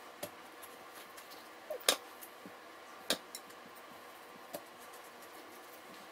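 A chef's knife knocking against a wooden cutting board while an avocado is cut in half, a few sharp knocks spread over the seconds, the loudest about two seconds in.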